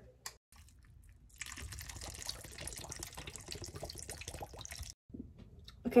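Canned coconut water poured into a bowl of fresh berries: a steady splashing pour lasting about three and a half seconds that cuts off suddenly.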